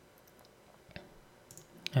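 A few faint computer mouse clicks: one about a second in and a few more near the end, over quiet room tone.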